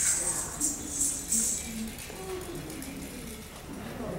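Small metal ankle bells (ghungroo) jingling in a few short bursts during the first second and a half as the dancer moves, with soft voices underneath.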